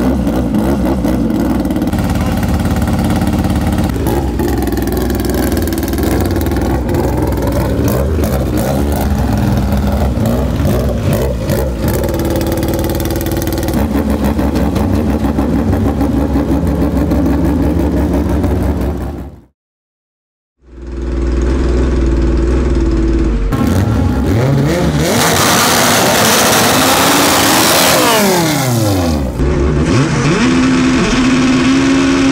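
All-motor Honda drag car's four-cylinder engine running steadily, its pitch stepping up and down now and then. After a sudden cut it revs up and back down, with a loud hiss of spinning tyres during a burnout.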